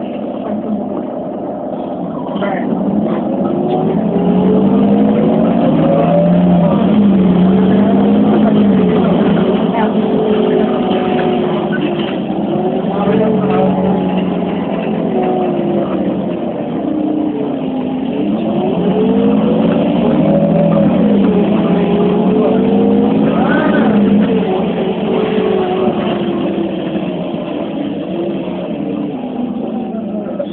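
Iveco Cursor 8 CNG engine of an Irisbus Citelis city bus, heard from inside the bus as it accelerates: the engine note climbs in pitch and drops back at each gear change, several times over, loudest in the first third.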